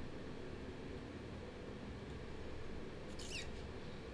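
Low steady room tone and hum from an open microphone, with one brief high-pitched squeak that falls in pitch about three seconds in.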